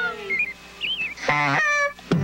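Cartoon bird voice: two short warbling chirps, then one loud, nasal honk lasting about half a second near the end, as the music fades out.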